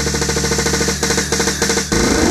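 Electronic dance remix in Indonesian DJ orgen style: a fast, even snare drum roll over a held bass note, building toward a drop, with a brief break just before the end.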